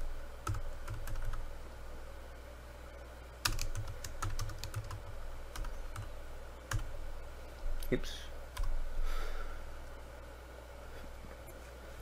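Typing on a computer keyboard: short bursts of a few key clicks at a time, with scattered single keystrokes in between.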